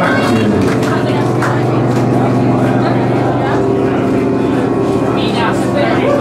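A live band playing loud in a small club: sustained low notes, with one note gliding down just after the start and a wavering high line near the end.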